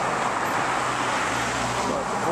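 Steady road traffic noise: cars driving past on a multi-lane road, an even rush with no breaks.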